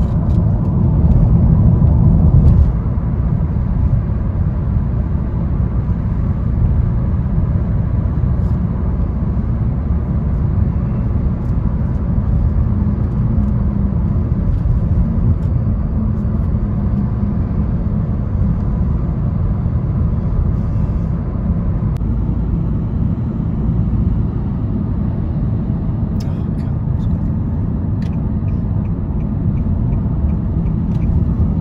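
Steady low road rumble heard from inside a moving car at motorway speed, a little louder for the first couple of seconds.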